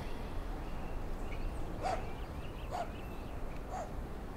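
Three short animal calls about a second apart over a faint, steady outdoor background.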